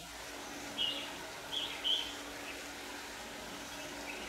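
Red-whiskered bulbuls calling: a few short, high chirps in the first two seconds.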